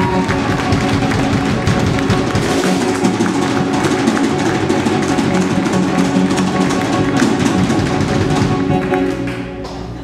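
Live rock band of electric guitar, bass guitar, drum kit and keyboard playing held chords over busy drumming, the sound dying down in the last second.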